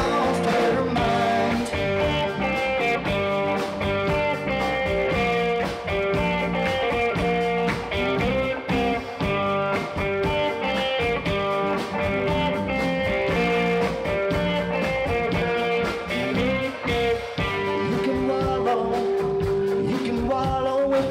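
Live rock band playing an instrumental passage between verses: two electric guitars over electric bass and a drum kit.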